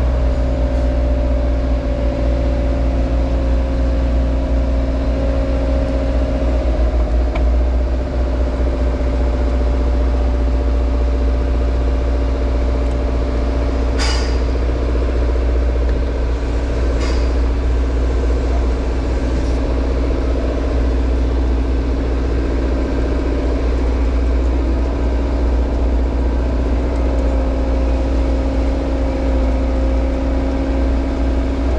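JCB Hydradig 110W wheeled excavator's diesel engine running steadily, heard from inside the cab: a deep hum with a steady whine over it. Two short, sharp clicks come about halfway through, three seconds apart.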